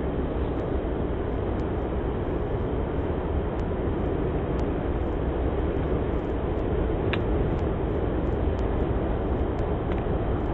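Steady low outdoor rushing noise with no distinct source, with one faint click about seven seconds in.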